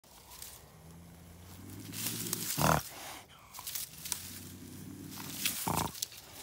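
A bobcat, caught by a front foot in a foothold trap, growls low and long twice. Each growl builds and ends in a short, loud spit, about halfway through and again near the end.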